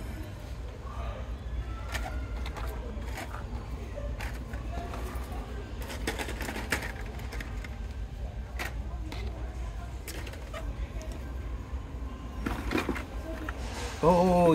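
Store ambience: a steady low hum with faint, indistinct voices, and scattered light clicks and knocks from handling nearby.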